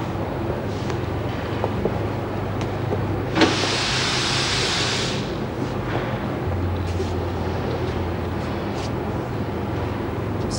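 Industrial laundry machinery running with a steady low hum. About three and a half seconds in, a burst of hiss starts with a click and lasts nearly two seconds.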